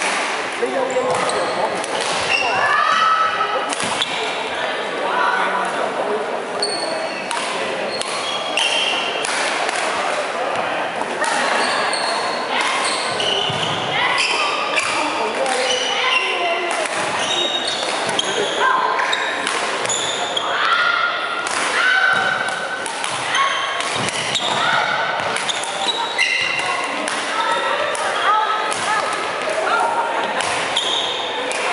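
Badminton rally on a wooden sports-hall court: rackets strike the shuttlecock in sharp, repeated cracks, while shoes squeak briefly and often on the floor. Voices chatter in the background, and everything echoes in the large hall.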